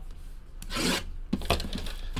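A brief rubbing scrape, about half a second long, a little way in: a hand handling a shrink-wrapped cardboard trading-card box.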